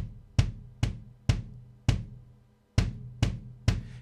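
Drum hits played from Drumagog 5's replacement samples, about two a second with a short gap a little past halfway. The overhead-microphone samples are being faded in, giving the hits a little more room sound.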